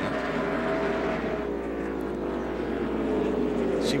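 NASCAR Cup race car's V8 engine at full throttle, held high at around 7,000 rpm. Its pitch eases slightly downward in the second half.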